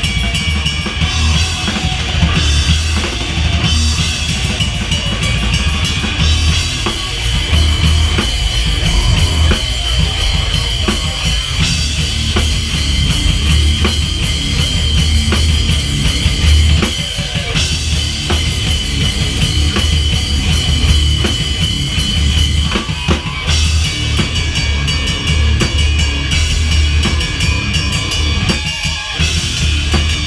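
Heavy rock band playing live at full volume: a drum kit with pounding bass drum, snare and cymbals drives under an electric guitar, steady and without a break.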